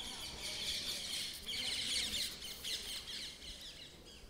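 Many small birds chirping, a dense run of quick high twitters that is loudest about halfway through and thins out near the end.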